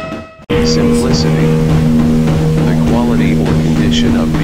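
Drum music fades and cuts off. About half a second in, a steady low hum of a few held tones starts, with voices over it and a few short high chirps just after it begins.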